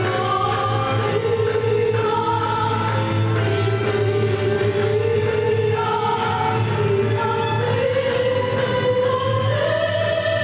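Live chamber ensemble playing: a woman singing through a microphone in long, slowly moving held notes, accompanied by flute, cello, guitars and a bowed string instrument over a steady low drone.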